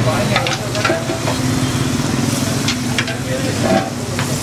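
Masala sizzling in a frying pan on a gas burner, with sharp metal clinks and scrapes from a ladle and a steel plate against the pan. A steady low hum runs underneath.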